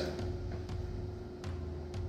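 Faint background music: a low bass line changing about every second and a half under a steady held note.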